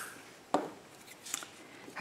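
A few light clicks and taps from a glue stick and paper pieces being handled on a desk, the sharpest about half a second in.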